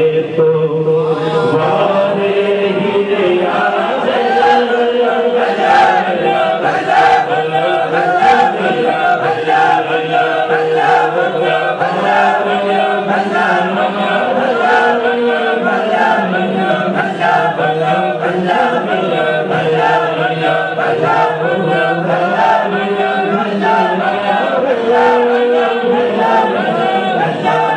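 A group of voices chanting a devotional refrain together over a steady held note, kept to a regular beat.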